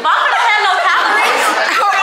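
A group of women talking over one another in lively chatter.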